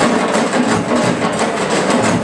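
A large drum ensemble playing live, many drums sounding together in a fast, busy rhythm.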